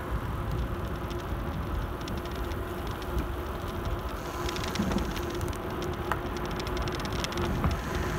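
Wind rumbling on the phone microphone and the rolling noise of a bicycle towing a trailer down an asphalt path, with scattered light ticks and clicks from the bike.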